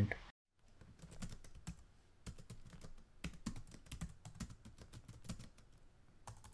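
Typing on a computer keyboard: faint, quick key clicks in irregular runs, starting about a second in and stopping shortly before the end.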